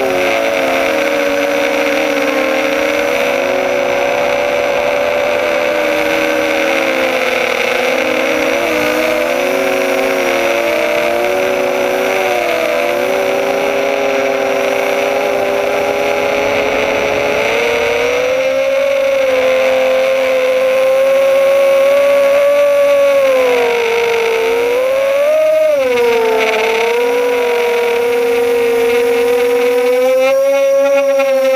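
Electric motors and propellers of a Blackout Mini H quadcopter whining, picked up by its onboard camera, the pitch wandering up and down with the throttle. About three-quarters through, the pitch swoops sharply up and back down.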